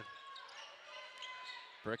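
A basketball dribbled on a hardwood court, under faint arena background noise.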